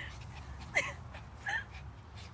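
Small Pomeranian dogs giving a few short, high yips while playing and chasing each other.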